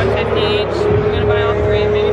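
A woman speaking over the background noise of a busy indoor hall, with a steady low hum and a constant held tone running beneath her voice.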